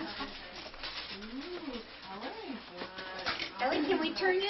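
Indistinct children's voices in a small room, with two drawn-out rising-and-falling vocal hoots a little over a second in and again past two seconds.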